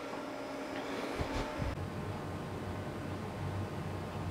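Steady low hiss of room tone, with a few faint soft knocks about a second in.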